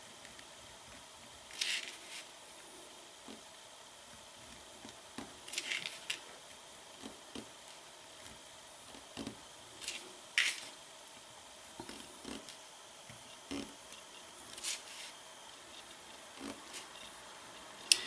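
Faint, scattered small ticks and brief scratchy strokes of a white gel pen tip drawing and dotting on a painted page.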